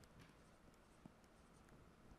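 Near silence with a few faint taps and scratches of a stylus writing on a tablet screen, the sharpest tap about a second in.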